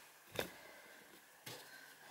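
Near silence: quiet room tone with a short soft click about half a second in and a fainter one near the end.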